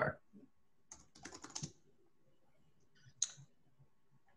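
Typing on a computer keyboard: a quick run of keystrokes about a second in, then a single sharper keystroke a little after three seconds in.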